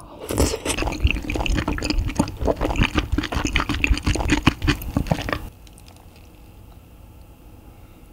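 Close-miked wet chewing of a mouthful of braised kimchi and pork belly (kimchi-jjim): dense squishy, smacking mouth sounds that stop about five and a half seconds in.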